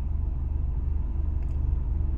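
Car engine idling, heard from inside the cabin as a steady low rumble.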